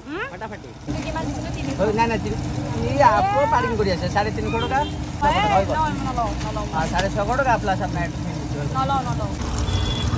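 People talking in short exchanges, over a steady low hum and rumble.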